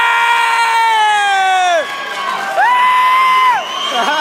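Spectators shouting at a jiu-jitsu match: two long held yells over crowd noise. The first is lower and lasts about two seconds, sagging in pitch at its end. The second, higher and shorter, comes about two and a half seconds in.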